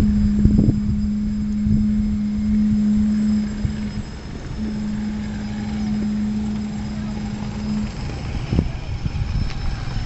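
Steady drone of construction-machinery engines over a low rumble. A hum breaks off about four seconds in, comes back half a second later, and stops near the eight-second mark, with a few short thumps.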